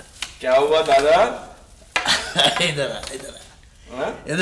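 A person's voice in two short phrases, with a few sharp clicks.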